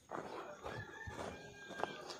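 Rooster crowing faintly: one drawn-out crow of about a second, starting partway in.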